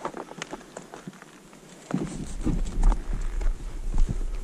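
Footsteps on a steep snowfield: irregular crunching steps in firm snow, joined about two seconds in by a low rumble and heavier, louder thuds.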